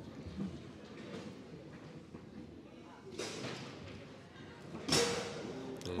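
Foosball table play: faint knocks of the ball and rods, then one sharp, loud knock about five seconds in as a pull shot is fired into the goal.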